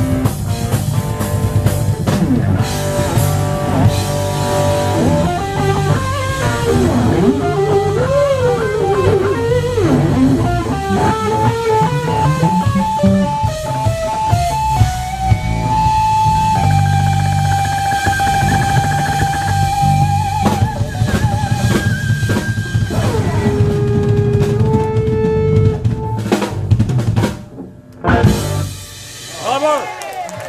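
Live rock band playing loud, with electric guitar, electric bass and drum kit, and sliding and long held notes on top. The playing breaks off near the end, then a last brief burst.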